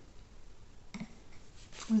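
Quiet room tone with a brief soft click about halfway through, then a woman's voice starts speaking near the end.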